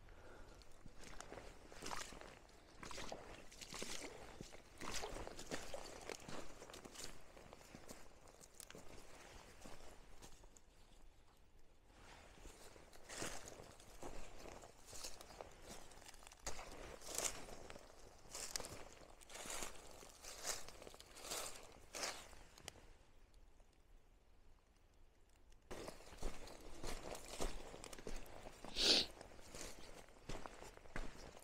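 Footsteps of a person in waders walking over streambank gravel and dry leaf litter: irregular crunching steps with short pauses, with one louder step near the end.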